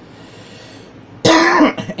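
A man clears his throat with one short, loud cough about a second in, after a moment of quiet.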